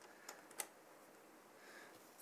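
Near silence, with two faint light clicks in the first half-second or so as a metal CPU-cooler mounting bracket is seated on its mounting bolts.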